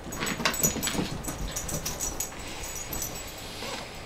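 Repeated sniffing and breathing into a cotton T-shirt held over the nose and mouth, in short, uneven snuffles that thin out in the second half.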